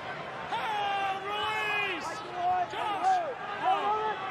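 Several men shouting short calls, one after another, over a steady hum of crowd noise at a rugby league ground.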